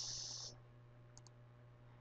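A faint computer mouse click, a quick double tick about a second in, over a quiet room with a steady low hum. It comes as the view switches to another tab of the page being edited. In the first half second the hiss of the last spoken word fades out.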